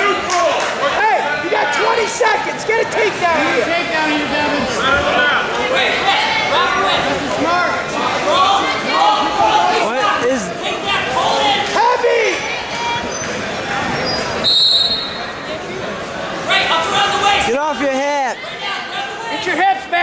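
Several voices shouting over one another, coaches and spectators calling to wrestlers during a bout, with dull thuds of bodies hitting the mat.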